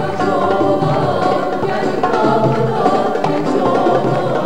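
A live Turkish orchestra with a large string section playing, with a group of female backing singers singing together over it.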